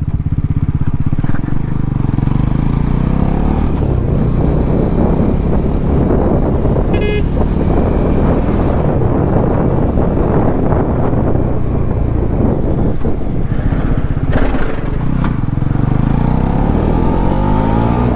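Bajaj Pulsar NS400Z's single-cylinder engine pulling as the bike gathers speed, its pitch rising near the start and again near the end, with wind rushing over the microphone. A brief vehicle horn toot about seven seconds in.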